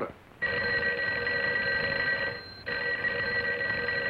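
Telephone bell ringing: a steady ring starting about half a second in, a short break a little past halfway, then a second ring that carries on.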